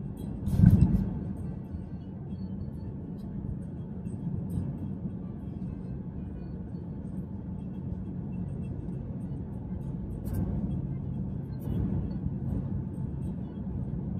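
Steady low hum of a car being driven, heard from inside the cabin, with one loud thump about a second in.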